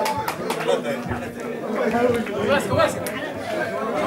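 Several people talking at once: overlapping chatter of voices in a room.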